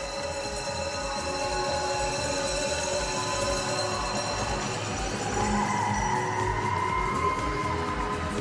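Music with a steady beat and held tones.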